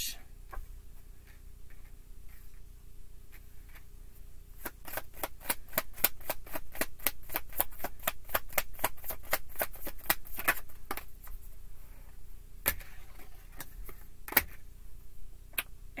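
Tarot cards being shuffled by hand: a run of quick card slaps, about four a second, for several seconds starting about five seconds in, then two single sharper snaps near the end.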